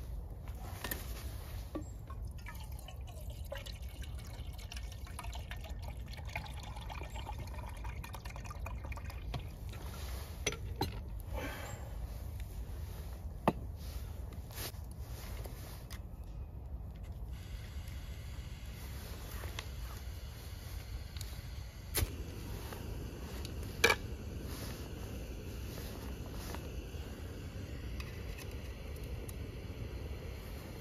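Jetboil Zip camp stove being assembled by hand: water pours and dribbles while a few sharp clicks and knocks sound as the pot support is fitted onto the burner and the cup set on top, over a steady low rumble.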